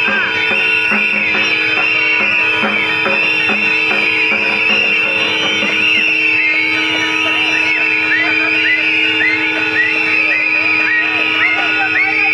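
A crowd blowing many whistles at once: a continuous tangle of shrill, overlapping chirps and warbles, over background music.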